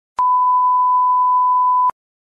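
A single steady electronic beep: one pure high tone held for about a second and a half, switching on and off with a click.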